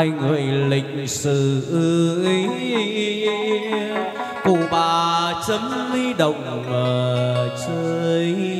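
Vietnamese chầu văn ritual music: a voice holding long notes and sliding between them over instrumental accompaniment.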